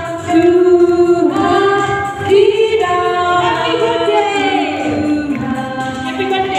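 A group of people, women's voices among them, singing a birthday song together unaccompanied, in long held notes.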